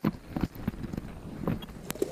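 Wind rumbling on the microphone, with a few sharp knocks and clicks scattered through it.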